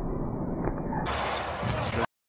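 Basketball being dribbled on a hardwood court, with broadcast game sound and voices around it. It is muffled for the first second, then clearer.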